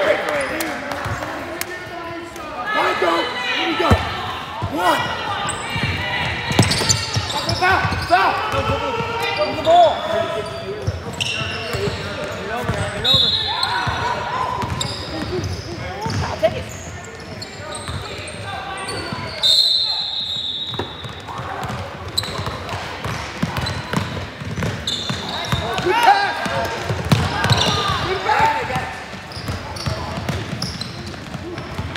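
Indistinct voices of players and spectators calling out in a large, echoing gym, with the thuds of a basketball being dribbled on the hardwood floor.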